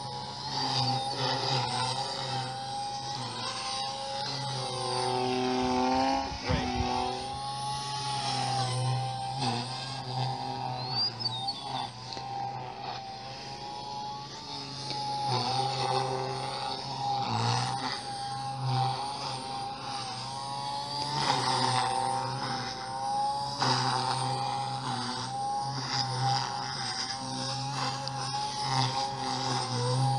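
Electric OXY 3 radio-controlled helicopter flying, its rotor and motor whine rising and falling in pitch as the head speed and load change through the manoeuvres.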